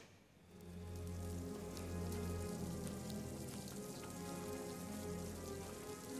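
Ambient soundtrack: a low held drone with steady higher tones over it, under an even rain-like hiss with faint scattered ticks.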